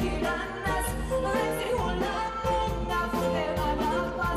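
A woman sings a Greek song into a handheld microphone, backed by a live band with a steady beat and bass.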